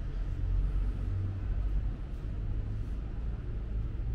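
A low, steady rumble with no distinct events.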